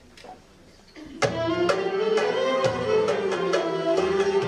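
Quiet for about a second, then a Turkish music ensemble of violins, cello and ud strikes up the instrumental introduction to an Azerbaijani folk song, with strong accented beats about twice a second.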